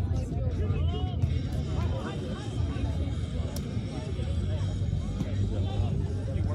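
Background chatter of many distant voices with music playing, over a steady low rumble, and one sharp click about halfway through.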